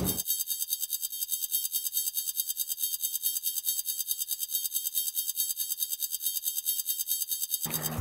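Thin, high-pitched electronic sound effect with a fast, even pulse of about a dozen beats a second and no low end. Fuller sound returns just before the end.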